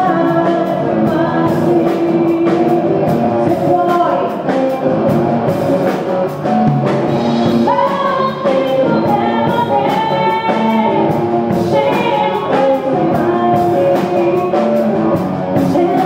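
Live rock music: a woman singing over electric guitar, with a drum kit keeping the beat.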